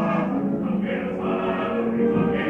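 Opera singing with orchestra, several voices overlapping at once, from an old live stage recording with a dull, muffled top end.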